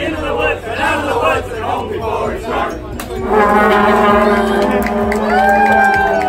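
A group of voices chanting together. About halfway through, a band of brass horns comes in with a chord of long held notes.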